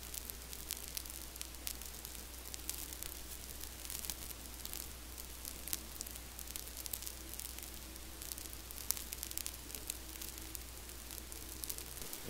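Faint hiss full of scattered fine crackles, like static, over a steady low electrical hum.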